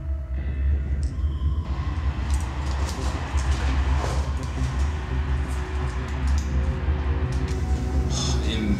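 Ominous film score or sound design: a deep, steady low rumbling drone. About two seconds in, a hissing noise layer with faint scattered ticks joins it.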